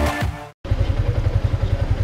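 Background music cuts off about half a second in. After a brief gap, a Yamaha Sniper 150's liquid-cooled four-stroke single-cylinder engine idles with a quick, even low putter.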